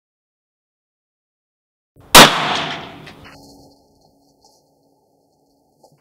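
A single rifle shot about two seconds in, very loud and sharp, its report echoing and dying away over about a second and a half.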